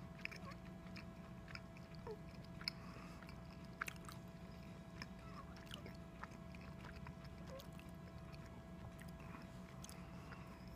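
Quiet chewing of a Twizzler red licorice twist close to the microphone: scattered soft clicks and smacks from the mouth over a faint steady hum.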